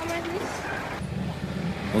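Busy street-market ambience: indistinct voices with a motor vehicle running close by.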